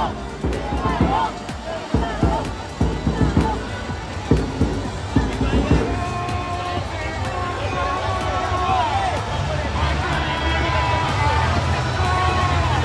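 Stadium crowd noise: a mix of voices calling and talking, with music. Irregular low thumps in the first half give way to a steady low hum with wavering voices over it.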